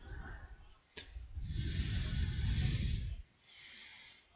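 A person's breath blowing on a close microphone: a long hissing exhale with a low rumble for about two seconds, then a softer breath near the end. A sharp click comes just before it, about a second in.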